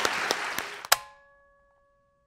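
Audience applause that cuts off abruptly with a sharp click about a second in, leaving near silence with a faint, fading ringing tone.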